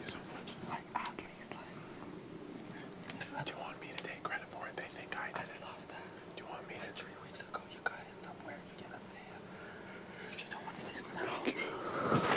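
Hushed whispered conversation between two men, faint, with small scattered clicks.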